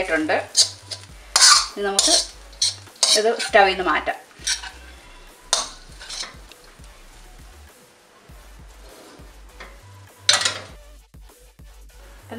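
A cooking utensil scraping and clanking against a pot as cooked beetroot rice is mixed and tossed: several strokes in the first four seconds, a quieter stretch, then one more stroke about ten seconds in.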